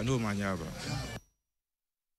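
A man speaking for about a second, then the sound cuts off suddenly to dead silence.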